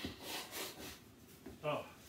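Several short rustling, rubbing noises from a person moving close by, about three in the first second, followed near the end by a man's brief "oh".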